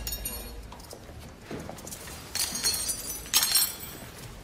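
Metal spoons clinking and clattering in two short ringing bursts, about two and a half and three and a half seconds in.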